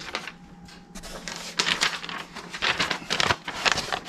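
Hands rummaging through paper packing in a cardboard box: irregular rustling and crinkling crackles that start about a second in and keep up quickly.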